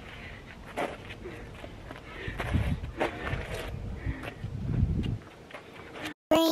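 Footsteps of several people walking and shuffling on a paved path, irregular and scattered, with two stretches of low rumble about two seconds in and again near five seconds.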